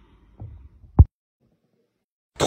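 Two dull low thuds: a soft one just under half a second in and a much louder, short one about a second in.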